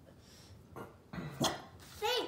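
A dog gives a short, low vocal sound about a second in, followed by a brief sharp sound near the end.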